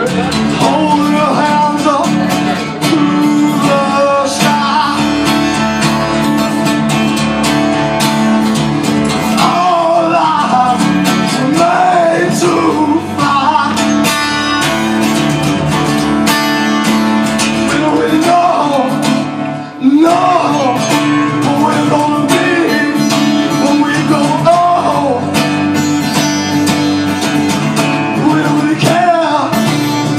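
Live acoustic guitar strummed steadily through a song, with a man singing the melody over it at intervals.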